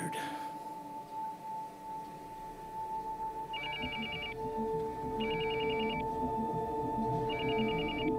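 Smartphone ringing with an electronic ringtone: three short rapid trilling rings, the first about three and a half seconds in, signalling an incoming call.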